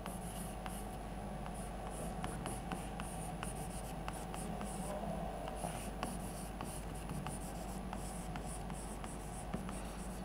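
Chalk writing on a blackboard: a continuous faint scratching, punctuated by many short, sharp taps as the chalk strikes and lifts between letters.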